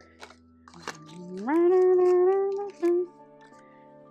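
A woman's voice rises into a long held note, then gives a short second one, over faint background music. A few light clicks come in the first second.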